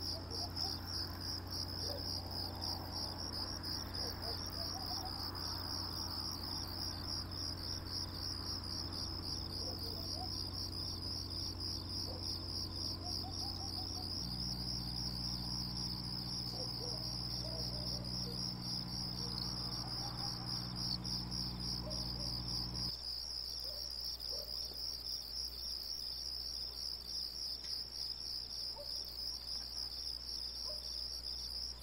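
Crickets chirping steadily in a fast, even pulsing trill at night. A steady low hum runs underneath and shifts in pitch about halfway through, then thins out about three-quarters of the way in.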